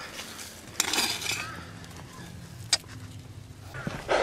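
Hands scrabbling through loose garden soil to dig out potatoes. There is a single sharp clink about two thirds of the way through, typical of a potato dropped into a stainless steel bowl.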